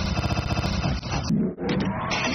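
A film monster's roar, long and rough, that cuts off abruptly a little past halfway, followed by a brief low rumble.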